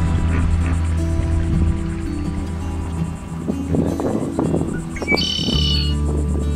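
Background music with sustained low notes and slowly changing chords, a few short plucked notes in the middle, and a brief bright high chime near the end.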